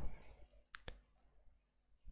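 Three faint, short clicks from a computer mouse, about half a second into the pause and close together.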